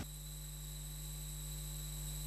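Faint, steady electrical mains hum from the sound system.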